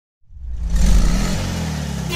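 A car engine fading in out of silence, at its loudest just under a second in, then running steadily.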